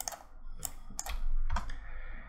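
Computer keyboard being typed on: about four separate keystrokes spread over two seconds, the first right at the start.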